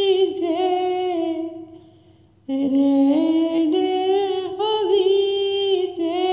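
A woman's voice singing a devotional song's melody unaccompanied in long, held notes, trailing off about two seconds in and starting a new phrase half a second later.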